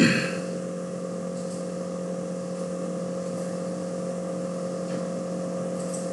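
Steady electrical background hum with a light hiss, one unchanging pitch with faint overtones, running at an even level.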